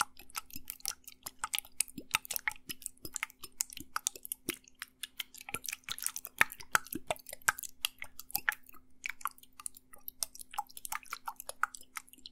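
Small bottle of blue alcohol liquid shaken right at the microphone: liquid sloshing inside with a dense, irregular run of crackly clicks.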